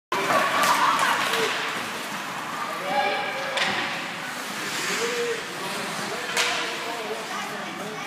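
Spectators' and players' voices calling out in an ice hockey arena, with a few sharp knocks from sticks and puck during play.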